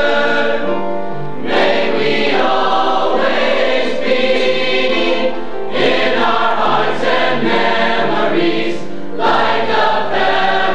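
Mixed-voice choir of teenage boys and girls singing a song in long held phrases, with a new phrase entering about a second and a half in, again near six seconds and again near nine.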